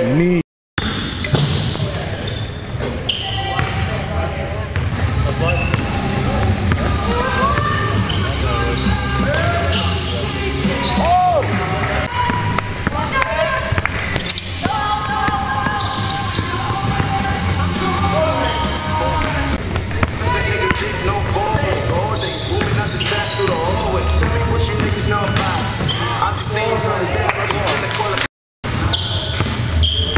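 Basketball game sounds on a hardwood gym court: a ball dribbled and bouncing, sneakers squeaking, and players' voices calling out indistinctly. The sound is twice cut to brief silence, once just after the start and once near the end.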